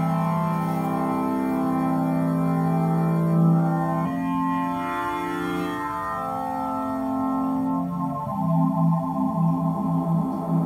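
Synthesis Technology E370 quad morphing VCO playing sustained four-voice wavetable chords. The chord changes about four seconds in and again about eight seconds in. Near the end the tone takes on a pulsing wobble.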